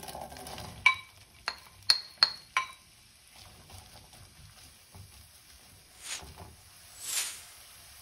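Diced onion tipped from a bowl into a frying pan of hot oil and butter with a brief rush of sizzle, followed by five sharp, ringing clinks of the bowl and wooden spoon as the last pieces are knocked out. Then faint sizzling and the soft scrape of a wooden spoon stirring the onion in the pan.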